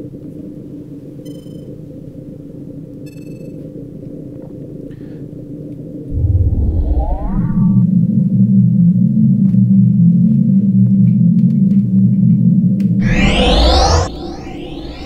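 Sci-fi spaceship sound effects: a low cockpit hum with a couple of short electronic beeps. About six seconds in, a deep rumble swells into a loud steady engine drone, and a rising sweep follows near the end.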